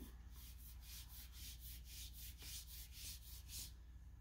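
Faint, quick strokes of a small watercolor brush on paper, about four swishes a second, stopping shortly before the end.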